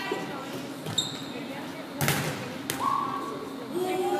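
A volleyball being hit during a rally in a gym hall: a sharp smack about two seconds in and a lighter one just after, each followed by the hall's echo, with short shouted calls from the players.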